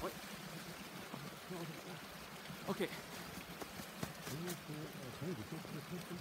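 Steady rushing of a mountain stream running under deep snow, with a few short clicks about four seconds in.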